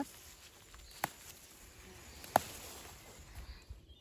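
Faint rustling of stinging-nettle leaves as a gloved hand picks among them, with two short sharp clicks, one about a second in and a louder one a little past two seconds.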